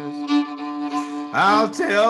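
Old-time fiddle bowed with a held double-stop drone, two notes sounding together. About a second and a half in, a man's singing voice comes in over the fiddle.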